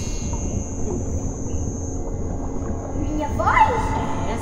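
Steady low rumbling underwater ambience with a faint high hum. Near the end comes one short voice-like call that rises and then falls in pitch.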